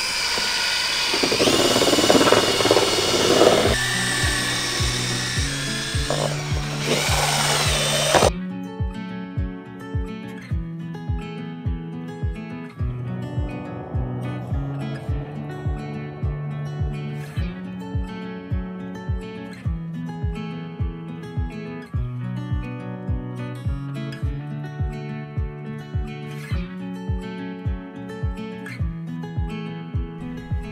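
Electric drill with a paddle mixing attachment running through a tray of ground meat mix, stopping abruptly about eight seconds in. Background music with a steady beat of about two pulses a second comes in under it and then carries on alone.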